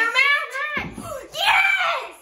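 A young girl shrieking with excitement: two high-pitched squeals, the second the louder, with a short burst of noise between them.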